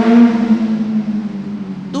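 A motor vehicle's engine passing by, its note rising just before and loudest at the start, then holding steady and slowly fading.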